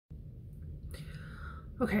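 A woman's breathy exhale, like a sigh or whisper, starting about a second in, over a low steady rumble of room noise; it leads straight into speech near the end.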